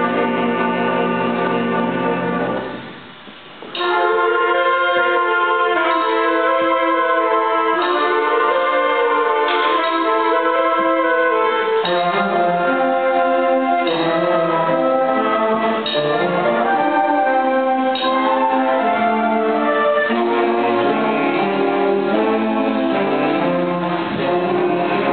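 Student concert band of woodwinds and brass playing. A held chord cuts off about two and a half seconds in, and after a pause of about a second the band comes back in with a moving passage.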